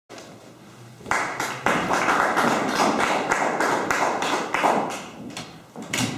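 Audience applauding, starting about a second in and fading out near the end.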